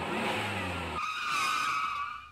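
Vehicle sound effect: an engine running, then about a second in it gives way suddenly to a high, wavering skid.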